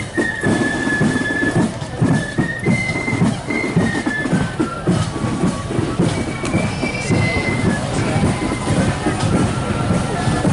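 Marching band music in the street: a single high melody line of held notes moving from pitch to pitch, over a continuous rumble of crowd and footsteps.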